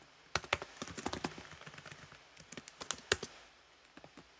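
Typing on a computer keyboard: an irregular run of quick key clicks that starts just after the beginning and stops a little before the end.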